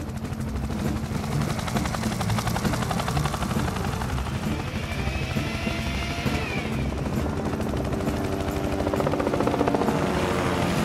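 Helicopter sound effect: steady, rapid rotor chop of a hovering helicopter, with music underneath.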